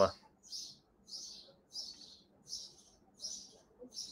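Small birds chirping over and over, about one short high chirp every two-thirds of a second, from a nest that the owners take for barn swallows.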